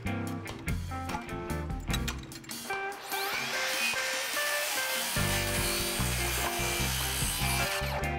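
Cordless circular saw cutting the lumber of a cap plate: it spins up with a rising whine about three seconds in, cuts through the board for about five seconds and stops just before the end, over background music.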